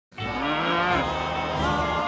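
A Holstein dairy cow mooing, with music playing underneath.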